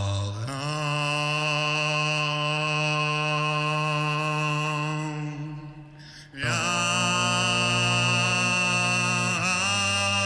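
Beatboxer's voice layered through a loop station in a live battle round: long held droning tones stacked with many steady overtones. The sound fades and drops away about five to six seconds in, then a new droning layer comes in suddenly and holds, with a brief bend in pitch near the end.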